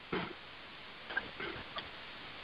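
A pause on a telephone conference call: faint line hiss with a few short, faint clicks and noises.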